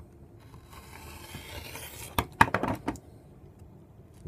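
A rotary cutter with a blunt blade rolls along a steel rule through a strip of Theraband Gold latex on a cutting mat: one scraping stroke of about a second and a half. Then comes a quick run of sharp clicks and knocks, the loudest sounds here.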